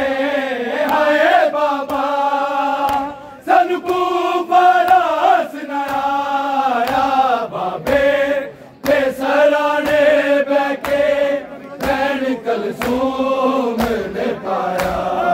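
A men's group chanting a Punjabi noha (Shia lament) in unison, in long melodic lines with brief breaks between them. Sharp slaps land roughly once a second in time with the chant, from mourners beating their chests (matam).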